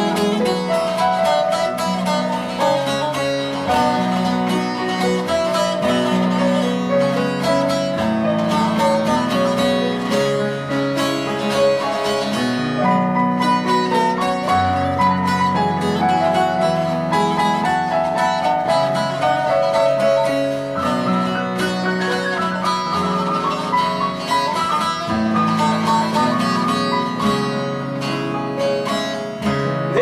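Bağlama (long-necked Turkish lute) and grand piano playing a Turkish folk tune together in an instrumental passage, without singing.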